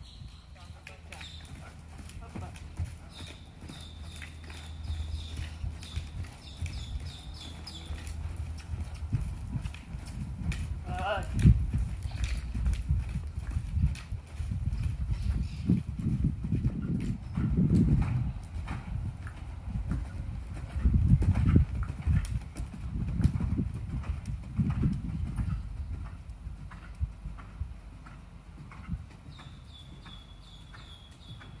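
Hoofbeats of a ridden dressage horse cantering on a sand arena footing, a run of muffled thuds that grows louder through the middle of the stretch.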